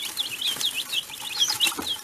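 A group of young chicks peeping: many short, high cheeps overlapping, several a second, as they crowd round food held out by hand.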